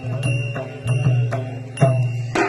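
Double-headed barrel drum played by hand in a steady rhythm: about two strokes a second, each a sharp slap followed by a low boom, with a high metallic ringing running alongside.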